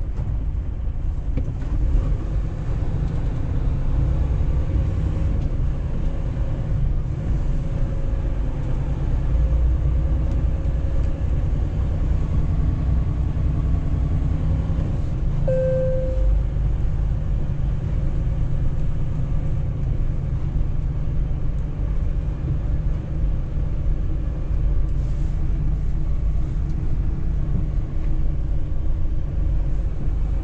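Steady low rumble of a semi-truck's diesel engine and road noise, heard from inside the cab while driving. A single short beep sounds about halfway through.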